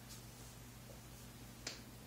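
Quiet room tone with a steady low hum, broken near the end by one short, sharp click.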